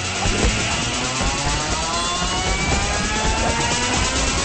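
A rising sweep in the soundtrack, several pitched tones climbing together from about a second in, over continuing music.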